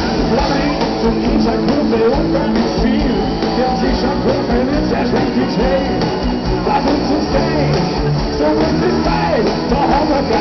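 Live rock band playing, with electric guitar, drums and a lead singer singing into a microphone.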